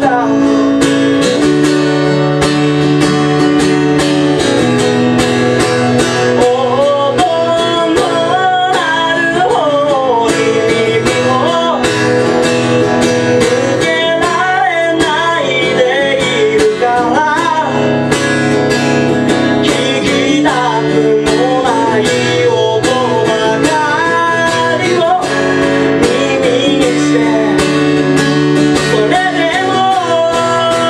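A man singing a song while strumming an acoustic guitar. It is a solo live performance of voice and guitar, with the strumming steady throughout.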